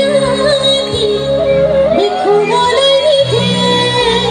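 A woman singing a melody with gliding, ornamented phrases over a live band of keyboard, electric guitar and drums, amplified through a PA.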